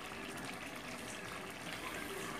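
Red pepper paste simmering in a pot on a gas stove, a faint, steady bubbling as its water cooks off.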